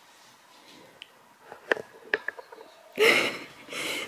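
Quiet small room with a few faint clicks, then a short breathy rush of noise about three seconds in, as a man wipes his face with a cloth towel.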